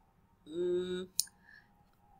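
A single sharp computer-mouse click a little after the middle, preceded by a brief held hesitation sound ("uhh") from the narrator at a steady pitch.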